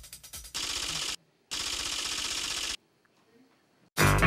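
Rapid clattering sound effect made of dense runs of fast clicks, as for on-screen text being typed out. It comes in two bursts: a short one about half a second in, and a longer one of over a second starting about a second and a half in.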